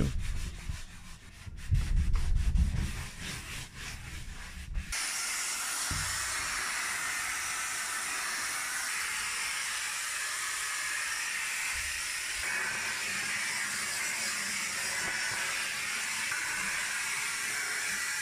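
A wet cloth rubbing and scrubbing over a wooden locker door, with dull, uneven low rubbing sounds. About five seconds in, the sound changes abruptly to a vacuum cleaner running, a steady high rush of air as its brush nozzle sucks dust from the locker's plywood interior.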